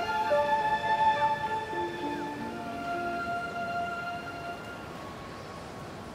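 Film soundtrack music of long, held notes layered over one another, with lower notes stepping down partway through, slowly getting quieter.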